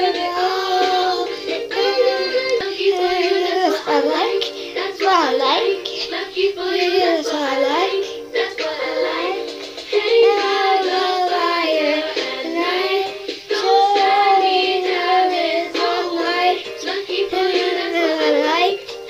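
A young girl singing in a high voice, the melody sliding up and down without a break.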